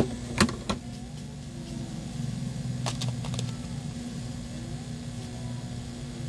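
Steady hum of a hot air rework gun's blower running. Sharp clicks come at the start and about half a second in, then a few fainter ticks about three seconds in, from handling the tablet and prying at its screen.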